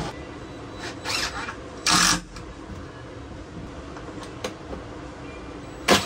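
Short bursts of cordless power-tool work on plywood cabinetry: a brief burst about a second in, a louder, sharper one about two seconds in, and another at the very end, over a steady low background hum.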